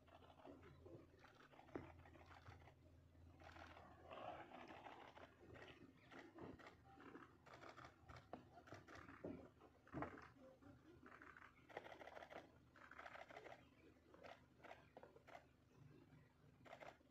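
Near silence: a faint open-air hush with scattered soft rustles and a few light clicks.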